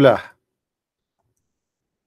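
A man's voice trailing off at the end of a word in the first moment, then dead silence.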